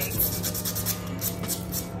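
A nail buffer block rubbed back and forth across a fingernail in quick repeated strokes, lightly buffing the natural nail as prep before polygel.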